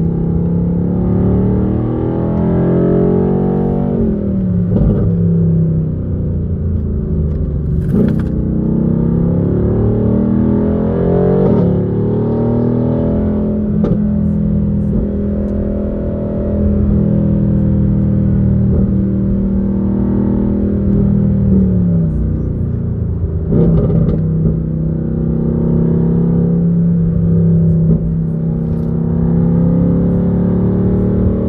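A car's engine running under way with road rumble, its note holding steady for long stretches and stepping down in pitch a few times, as at gear changes.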